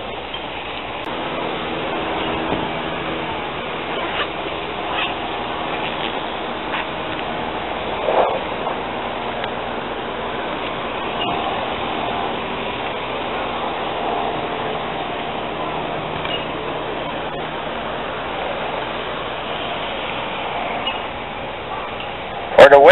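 Steady outdoor background noise beside a road, with faint passing traffic and a few brief, louder sounds about four, five and eight seconds in.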